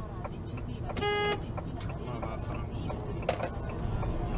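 A car horn gives one short toot about a second in, over steady road and engine noise heard from inside a car.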